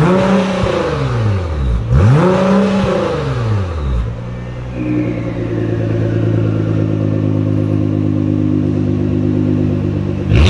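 2017 Nissan GT-R R35's 3.8-litre twin-turbo V6 through an Fi Exhaust decat race exhaust, revved twice in quick succession with the exhaust valves closed, each rev rising and falling within about two seconds. It then settles to a steady idle that turns fuller just before five seconds in, as the exhaust valves are switched open.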